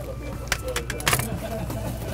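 A few sharp clinks and knocks of small equipment being handled on a pharmacy compounding counter, about half a second and a second in, over a steady low hum.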